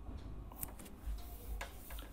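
Low room tone with a steady low hum and three short, faint clicks, about half a second in, then near the end.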